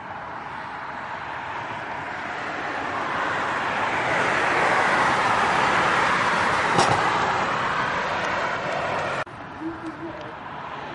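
A car passing along the street: tyre and road noise swells over several seconds, peaks in the middle and fades, then cuts off suddenly about nine seconds in.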